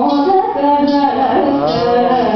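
A woman singing a melody in the Indian classical style, holding notes and sliding between pitches in a long ornamented phrase.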